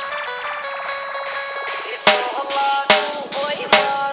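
DJ remix dance music: a melodic instrumental line of quick stepping notes, then about halfway through a heavy drum beat comes in with strong, evenly spaced hits.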